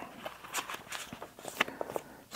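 Pages of a paperback rulebook being flipped, then two six-sided dice rolled into a wooden dice tray: a scatter of small, irregular clicks and taps.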